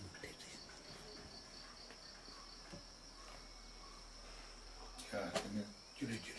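Faint, steady high-pitched trill of a cricket, pulsing evenly. A short burst of a person's voice comes near the end.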